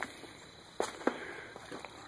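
Quiet outdoor background with a few faint, short clicks, two of them close together about a second in.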